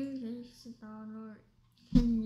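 Quiet speech in a young girl's higher-pitched voice: a short spoken reply in two brief parts.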